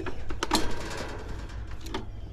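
Two clicks, then a brief hiss of refrigerant escaping for about a second as the blue low-side gauge hose is unscrewed from the air-conditioner condenser's service port.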